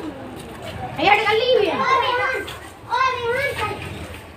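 Boys' voices talking loudly in two stretches, one about a second in and a shorter one near the end, high-pitched child speech over low street background noise.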